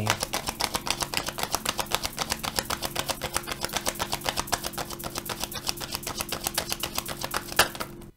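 A deck of tarot cards being shuffled by hand, the cards slapping together in a fast, even run of clicks, about eight or nine a second. It stops with a sharper click near the end.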